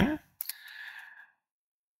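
A man's soft exhale, preceded by a couple of small mouth clicks, as he pauses between sentences.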